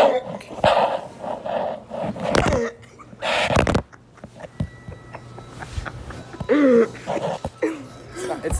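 A teenage boy laughing hard in a string of short, breathy bursts, then a couple of pitched, squealing laughs near the end.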